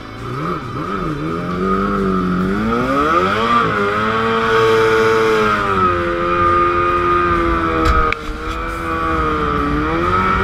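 Racing hydroplane's engine heard from on board, revving as the boat pulls away. The pitch wavers low for the first couple of seconds, climbs sharply about three seconds in, then holds fairly steady, with a brief dip just after eight seconds.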